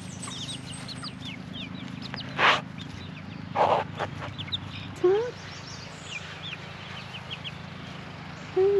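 Juvenile chickens peeping, with many short high chirps and a lower rising call about five seconds in. Two brief scratchy bursts of noise come a little over two and three and a half seconds in.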